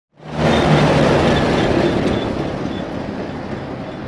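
An old pickup truck driving on a road, its engine running and its loaded bed rattling, the sound easing off steadily as the truck pulls away.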